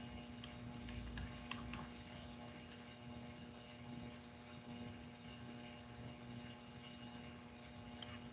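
Quiet room tone with a steady faint hum and a few faint clicks in the first two seconds.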